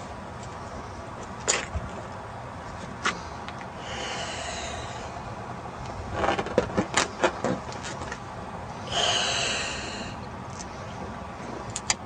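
A balloon being blown up by mouth: two long breaths blown into it, about four and nine seconds in, with scattered short clicks between them.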